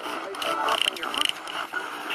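A spirit box sweeping through radio stations: choppy static broken by short fragments of sound.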